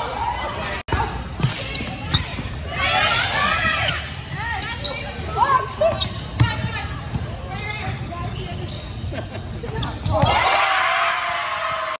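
Volleyball rally in a large echoing gym: players and onlookers shout, with sharp thuds of the ball being hit and landing on the court. About ten seconds in, a loud burst of many voices cheering and screaming begins.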